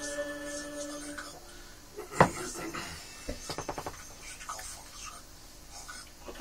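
Held notes of church music that stop just over a second in, then a single sharp knock about two seconds in and a quick run of small clicks a second later.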